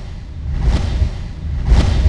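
Cinematic sound-design effect: a deep low rumble with a whoosh swelling and fading about once a second, peaking twice.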